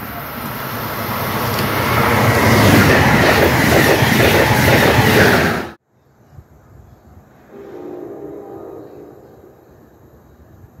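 Electric train running past at speed on the main line, growing louder over about three seconds with wheel clatter, then cut off abruptly about halfway through. Much fainter station background follows, with a brief faint hum.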